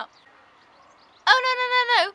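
Quiet room tone for about a second, then a woman's voice holding one high, steady vocal note for well under a second before she starts talking again.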